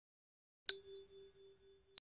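A single high bell-like ding, the notification-bell sound effect of a subscribe animation, struck about two-thirds of a second in and ringing on with a wavering level.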